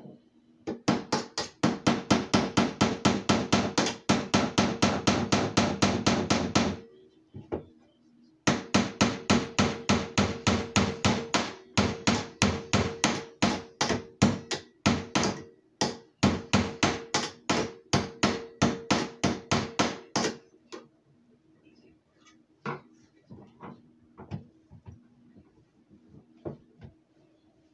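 Rapid, steady strikes of a hand tool on a wooden frog gig handle, about six a second, working a hole through it by hand without a drill. A run of several seconds, a short pause, a longer run with brief breaks, then a few scattered knocks near the end.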